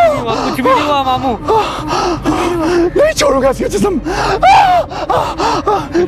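A man gasping loudly and crying out in strained, wordless vocal sounds, acting out a fit of possession.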